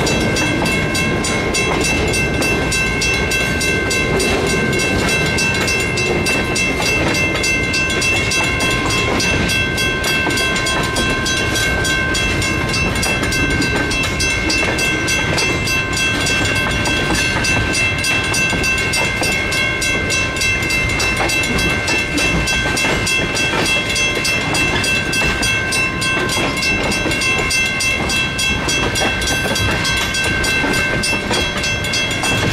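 Freight cars of a CSX train rolling past close by: a steady rumble with continuous wheel clatter over the rail joints, and a steady high-pitched ringing tone running through it.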